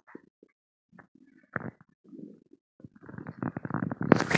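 A bloated stomach gurgling, heard close up against the belly. Scattered short gurgles and one louder gurgle about a second and a half in give way near the end to a rapid, crackling run of bubbling gurgles. The bloating follows eating Mentos.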